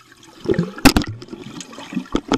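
Pool water sloshing and bubbling around a camera held underwater, heard muffled through it, with irregular sharp knocks; the loudest comes a little under a second in.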